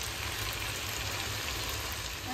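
Chicken pieces and potatoes frying in an oiled wok: a steady, even sizzle.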